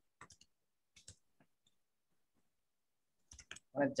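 Computer keyboard keys clicking as text is typed: a quick run of faint keystrokes, a pause, then a few more just before a voice starts speaking near the end.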